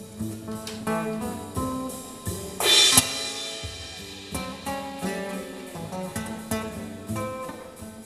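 Live instrumental music: two guitars, one acoustic, picking quick melodic lines over drums. A cymbal crash a little under three seconds in is the loudest moment.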